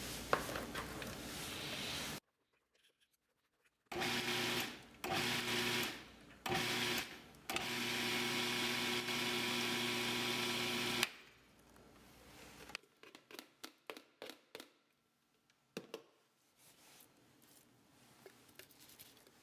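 Food processor motor pulsed three times in short bursts, then run for about three and a half seconds, chopping the chickpea, herb and onion falafel mixture to a coarse consistency. Before it, a spatula scrapes the mixture off a plastic bowl into the processor; after it, a run of light clicks.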